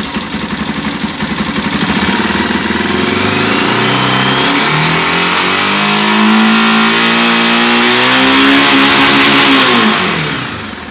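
Honda NX400i Falcon's single-cylinder engine revved from idle: the revs climb over several seconds, are held high, then drop back at the very end. The throttle is held open to check the stator's AC output, which climbs toward the 80 V the stator should give.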